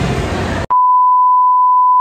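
Steady test-tone beep of a TV colour-bars test pattern, one pure tone of about 1 kHz. It cuts in abruptly about two-thirds of a second in, replacing the ambient sound, and holds unchanged.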